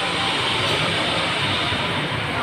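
Steady, even rushing background noise of a shopping mall interior, with no single distinct event standing out.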